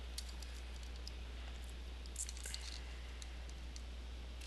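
A few faint clicks and crinkles of copper foil tape being handled and fed through a 3D-printed plastic flashlight frame, over a steady low hum.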